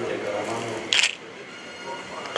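A man's voice over a microphone, then about a second in a short, sharp hissing click, the loudest sound here, after which it goes quieter.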